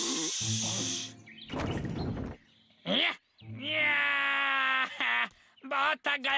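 Cartoon soundtrack of sound effects and voice: a hissing effect for about the first second, a short rough burst, then one long held cry-like tone lasting over a second, with music under it.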